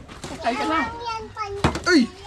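Excited men's voices calling out, with a sharp knock about one and a half seconds in.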